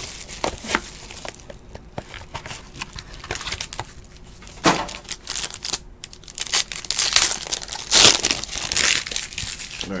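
Plastic and foil wrapping of a sports trading card box and pack being torn open and crinkled by hand, in irregular crackles, with louder bursts of crinkling about halfway and again near the end.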